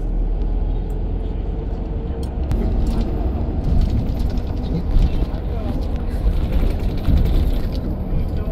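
Steady low rumble of engine and road noise heard from inside a moving vehicle, with indistinct voices over it.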